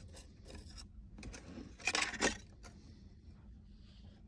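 Light metallic taps and clinks of a thin aluminum strip handled against a plate of small magnets, a few faint ones early and a brighter cluster of clinks about two seconds in.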